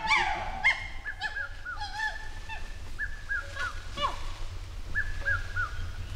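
A group of chimpanzees pant-hooting together in a chorus. Loud, high, harmonic screaming calls come right at the start, followed by many shorter overlapping calls from several animals that rise and fall, over a low rumble.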